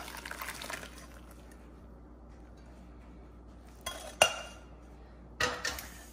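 Broth pouring and splashing through a fine-mesh metal strainer into a glass bowl for under a second. After a pause, two sharp metallic clanks that ring briefly, about four seconds in, and a short clatter near the end, as the metal pan and strainer are knocked and set down.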